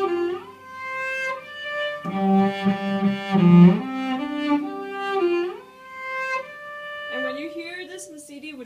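Solo cello played with the bow: a slow phrase of long, sustained notes stepping from one pitch to the next. The playing stops shortly before the end and a woman starts talking.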